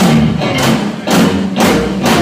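Live rock band playing loud, with electric guitar, bass guitar and drum kit hitting heavy accents together about every half second, with a brief drop in between around a second in.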